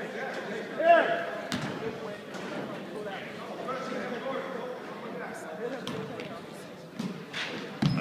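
Voices echoing around a school gymnasium, with a few sharp knocks of a basketball bouncing on the hardwood floor, one early and a few near the end as play restarts.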